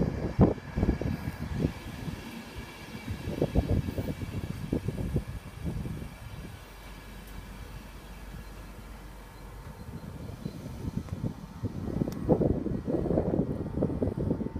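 East Coast InterCity 225 train of Mark 4 coaches, led by driving van trailer 82208, running past along the platform: irregular wheel knocks and rumble over the rails with a faint steady whine. It eases off in the middle and grows louder again near the end.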